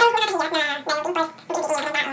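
A man's voice in short, high-pitched, playful phrases with no clear words.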